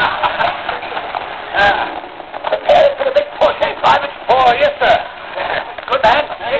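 Speech only: voices talking on a narrow-band old television soundtrack.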